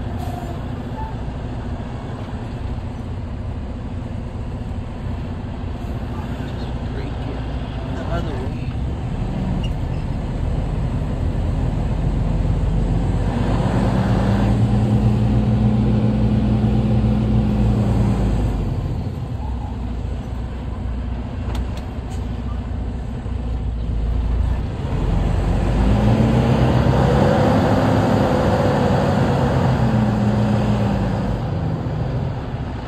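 Semi-truck diesel engine heard from inside the cab, running steadily as the rig moves at low speed. Twice, about halfway through and again near the end, the engine note rises and grows louder as it pulls, then eases off.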